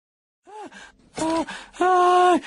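Silence, then a cartoon character's startled voiced gasps: three short exclamations that rise and fall in pitch, the third held longer near the end.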